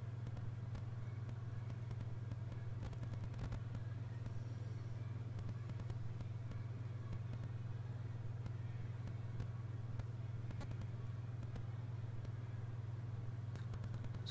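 A steady low hum with nothing else over it, and a brief faint high hiss about four seconds in.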